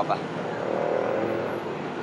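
Steady background street traffic noise: an even hum of vehicles on a city street.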